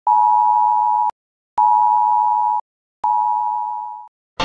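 Broadcast test-pattern tone: a steady electronic beep sounded three times, each about a second long with short silent gaps, the third fading out.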